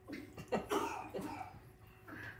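A few short, quiet bursts of a person's voice that are not words, like coughing or a stifled chuckle.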